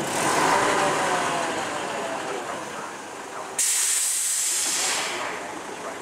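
Front-loader garbage truck (MacDonald Johnston MNL body on a Mitsubishi FUSO) running its engine and hydraulics as the front arms lift a steel bin, with a faint whine that falls in pitch. About three and a half seconds in, a sudden loud hiss of compressed air starts and fades out over about a second and a half.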